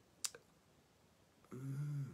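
A sharp single click, followed a moment later by a fainter one, close to the microphone. Near the end, a man's voice says 'ooh'.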